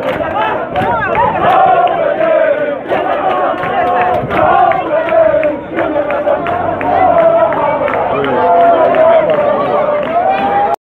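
A marching column of sailors chanting and shouting together, many men's voices holding drawn-out notes.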